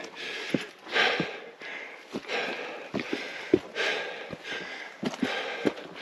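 A hiker's heavy, hard breathing while climbing a steep rocky slope, the breaths coming in repeated swells, with scattered short footsteps and scuffs on rock. He is out of breath from the climb.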